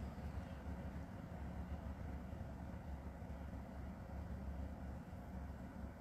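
Quiet room tone: a steady low rumble with faint hiss and no other distinct event.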